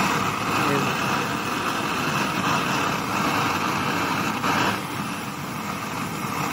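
Gas blowtorch flame burning with a steady hiss as it heats a copper sheet toward red heat.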